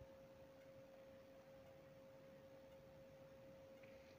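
Near silence: room tone with a faint, steady single-pitched hum.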